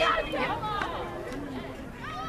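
Several voices calling out and talking over one another, loudest at the start and thinning out over the next second or so.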